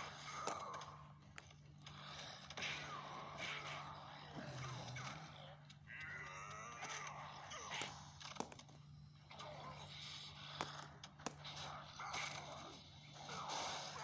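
Plastic Four Arms and kaiju action figures knocked together in a play-fight: a handful of sharp clacks among breathy, wordless vocal noises, over a steady low hum.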